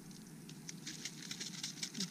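Faint, irregular crackling and pattering of leaves and red-ant-nest debris being stirred by a gloved hand in a mesh collecting basket.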